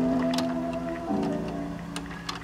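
Outro music of slow, sustained chords, each fading away, with a new chord struck about a second in and a few faint clicks over it.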